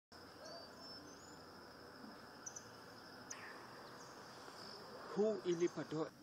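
Faint outdoor ambience with a steady high-pitched insect drone, like crickets, and a few short high chirps. About five seconds in, a person's voice speaks a few brief syllables, louder than the rest.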